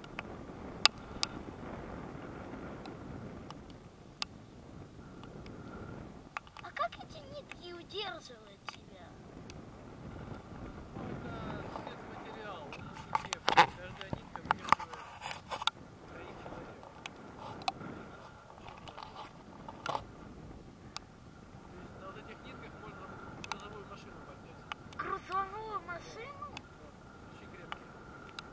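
Wind rushing over the microphone of a camera on a paraglider in flight, rising and falling, with scattered sharp clicks and a few faint snatches of voice.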